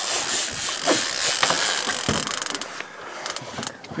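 Fishing reel's drag screaming as a halibut runs and strips line off the reel. About halfway through, the run slows and the whine breaks up into rapid clicking.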